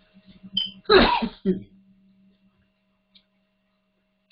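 A man's short vocal outburst over a conference-call line, loudest about a second in, with a steady low hum underneath.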